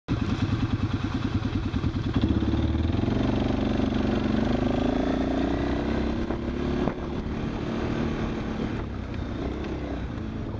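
Quad (ATV) engine running under way, pulsing at first, then rising in pitch as it accelerates for a couple of seconds. It holds, then drops sharply as the throttle eases about seven seconds in.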